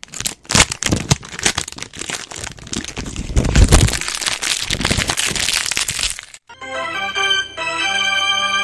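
Segment-intro sound effect: a dense run of cracks and crackles lasting about six seconds, with a deep rumble about halfway. It is followed near the end by a short held musical chord.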